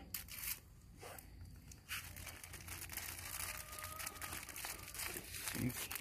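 A thin clear plastic bag crinkling and rustling as hands fit it over a freshly grafted bougainvillea shoot to keep the graft moist. It is a faint, irregular run of small crackles that grows denser about two seconds in.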